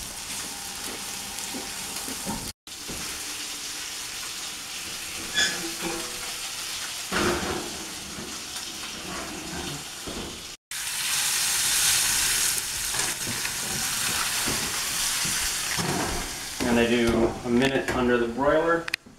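Arctic char fillets sizzling in butter in a raw steel sauté pan, a steady frying hiss. It gets louder and brighter after a sudden cut about ten seconds in, and a voice comes in near the end.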